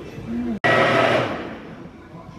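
Countertop blender running, blending rosé, strawberries and ice into frosé; it cuts in abruptly about half a second in and dies away over the next second as it winds down.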